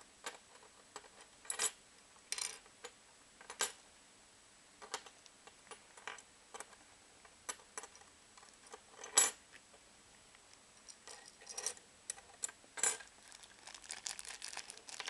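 Small metal and plastic Beyblade top parts clicking and clinking as the Fang Leone 4D fusion wheel is turned and fitted together. Irregular sharp clicks, a few seconds apart, the loudest about nine seconds in.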